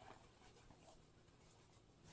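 Near silence, with faint rustles and a few soft ticks as a belt is handled and fitted around a wool-and-silk poncho.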